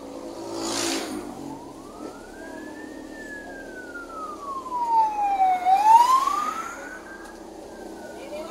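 A siren wailing in slow rises and falls, about one cycle every four seconds, over steady vehicle road noise. Two louder rushes of noise come about a second in and again around five to six seconds in, the second being the loudest moment.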